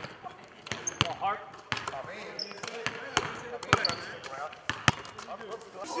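Basketballs bouncing on a hardwood court in a large arena: sharp, irregular thuds, about ten over a few seconds.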